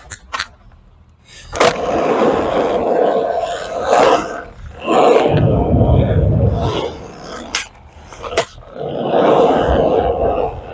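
Skateboard rolling on concrete, the wheel noise rising and falling, with several sharp clacks of the board striking the concrete.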